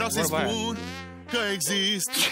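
A singing voice with a strong, fast warble, held over a steady low backing note. It fades about a second in and comes back shortly after.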